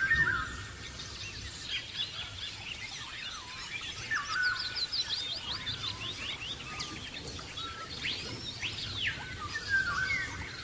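Several birds singing and chirping, with whistled up-and-down glides, a rapid run of short falling notes around the middle and looping whistles near the end.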